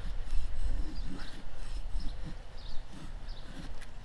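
Large Bowie knife blade shaving thin curls down a dry wooden stick in repeated short scraping strokes, roughly two a second, over a low rumble.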